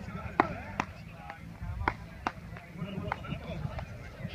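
Beach tennis paddles striking the ball in a rally: a string of sharp pocks, the loudest about half a second in, then more at irregular intervals. Background voices run under them.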